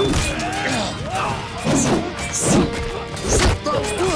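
Close-combat sound effects over dramatic background music: a series of heavy blows and weapon clashes about a second apart, with men grunting and shouting.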